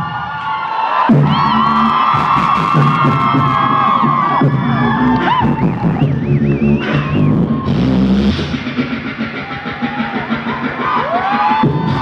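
Live beatboxing through a PA: a rhythmic low bass beat made with the mouth, with held, wavering sung or hummed pitched lines over it.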